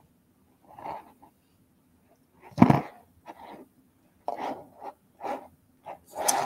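A dog barking a few times, one bark louder than the rest about three seconds in.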